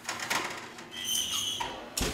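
Metal baking sheet scraping as it slides onto a wire oven rack, with a brief high-pitched metallic squeal about a second in, then the oven door shutting with a sharp knock at the very end.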